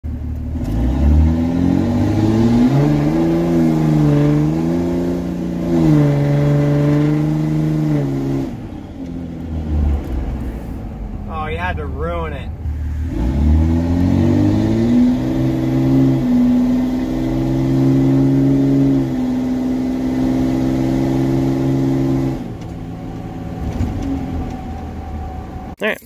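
Ram 2500's 5.9 Cummins turbo diesel heard from inside the cab while driving, pulling through the gears, its pitch holding, rising and stepping between shifts. A brief wavering higher sound cuts in about twelve seconds in.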